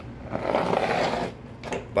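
Glass spice shaker with a metal cap being handled on a wooden table: a rough rubbing sound lasting about a second, then a short knock.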